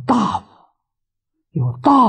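Only speech: an elderly man speaking Mandarin in two short stretches, with a silent gap of about a second between them.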